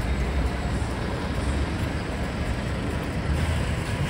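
City street traffic noise: a steady low rumble of road traffic, with a city bus passing close by.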